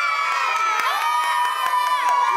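A group of children shouting and cheering together in high, drawn-out overlapping voices.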